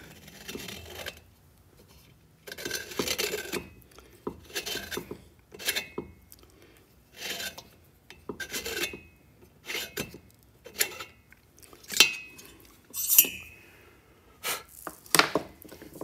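Neway hand-turned valve seat cutter scraping around a valve seat in a Volkswagen cylinder head. It makes a series of irregular rasping strokes about a second apart as its blades cut the 60-degree throat angle of a three-angle valve job.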